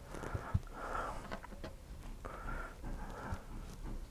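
Faint breathing close to the microphone, in soft paired breaths, with a few small clicks.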